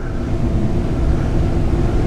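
Steady low rumble of room background noise with a faint hum, in a pause between speech.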